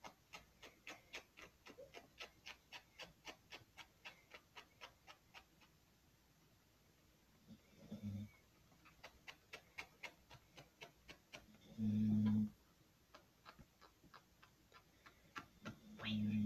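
Marker pen scribbling on a foam squishy in quick, even strokes, about three a second, with a few seconds' pause midway. Two short low hums, about eight and twelve seconds in.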